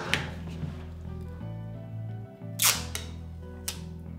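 Steady background music, with two short sharp crackling snaps about a second apart in the second half as the protective plastic film is peeled off a Rode Wireless GO II receiver.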